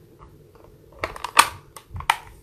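A quick run of sharp plastic clicks and taps from craft supplies being handled, one louder snap about halfway through.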